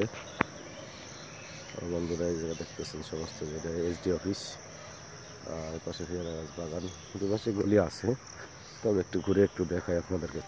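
Insects giving a steady, high-pitched drone behind a man's voice talking in several stretches, with one sharp click less than half a second in.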